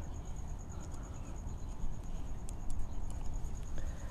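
Quiet background with a few faint clicks of a metal dial caliper being handled and set against a rubber floor liner, over a faint, steady, high-pitched pulsing trill.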